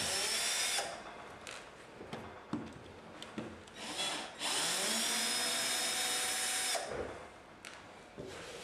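Cordless drill-driver driving screws into a flush-mounted electrical box in the wall, running in bursts: a short run at the start, a brief blip about four seconds in, then a longer run of about two and a half seconds whose pitch rises as the motor spins up.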